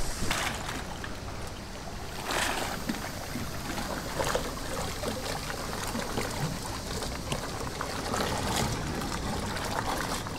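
Kayak paddles dipping into calm seawater, with water trickling off the blades and lapping at the hull; a few stronger strokes stand out now and then.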